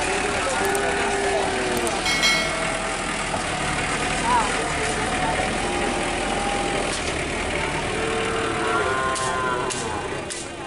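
Small pickup truck's engine running as it drives slowly, with people's voices and calls from the crowd over it.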